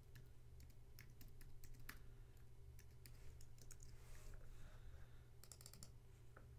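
Faint typing on a computer keyboard: scattered single keystrokes, then a quick run of clicks near the end.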